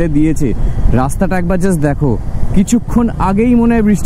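A person talking over the steady road and wind noise of a Bajaj Dominar 400 motorcycle riding on a wet highway. A bus passes close alongside near the end.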